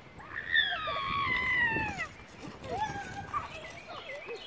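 A young child's long, high-pitched squeal that slowly falls in pitch over about two seconds, followed by a shorter call about three seconds in.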